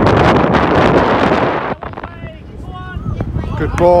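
Wind buffeting the phone's microphone, cutting off abruptly a little under two seconds in; after that, a few distant high-pitched shouts from the pitch.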